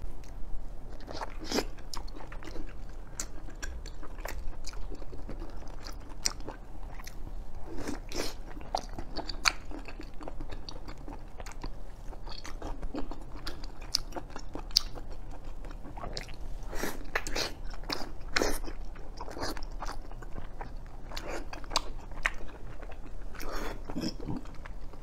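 Someone biting into and chewing a soft cocoa-dusted chocolate mochi with mango filling, close to the microphone, with many short, irregular mouth clicks and smacks.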